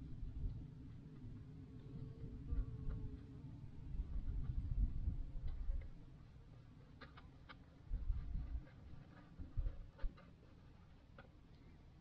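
Faint strokes and small ticks of a bristle brush working oil paint onto canvas, under low rumbling gusts on the microphone that swell about four seconds in and again near eight seconds.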